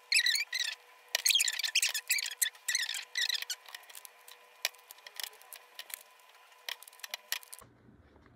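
High-pitched, wavy squeaks and chirps with sharp clicks among them, thinning out to scattered small clicks after about three and a half seconds, over a steady hum. The stretch sounds fast-forwarded, like sped-up room sound of hands fixing small decorations onto a toy figure.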